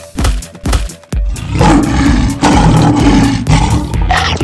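Lion roaring, starting about a second in and running as two long roars back to back, over electronic background music with a steady beat.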